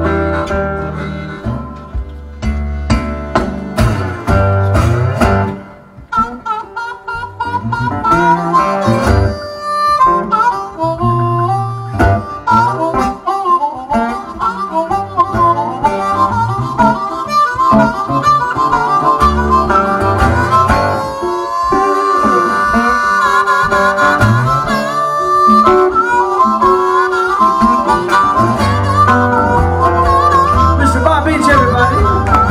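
Blues harmonica solo with bent notes over slide guitar accompaniment, in an instrumental break between sung verses.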